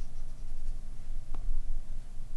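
Apple Pencil tip tapping and sliding on the iPad's glass screen as strokes are drawn, with a low bump about one and a half seconds in and a brief rising squeak just before it.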